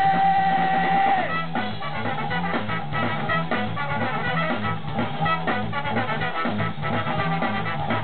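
Live ska-rock band playing an instrumental passage: a high note is held for about the first second, then the bass and drums drive a steady, bouncy beat under the guitars and horns.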